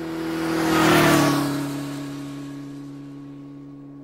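PureVlogs outro logo sound effect: a rushing whoosh that swells to a peak about a second in and then fades, over a steady, low held tone.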